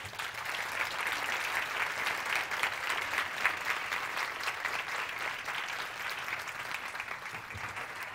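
A large audience applauding: dense, steady clapping that builds within the first second and eases off slightly near the end.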